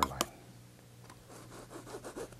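A palette knife pressed firmly into wet oil paint and drawn across a canvas to cut in a waterline: a faint scraping rub, with a couple of light clicks at the start.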